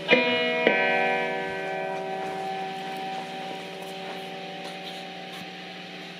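Electric guitar strings through an Alamo Fury tube bass amp with a 15-inch speaker: the strings are sounded twice, about half a second apart, then left to ring and slowly fade. A steady low hum runs underneath.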